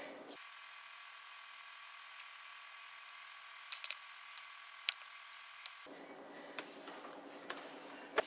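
Faint, soft handling sounds of a cookie dough ball being rolled in powdered sugar between the hands over a plastic cutting board, with a few light taps.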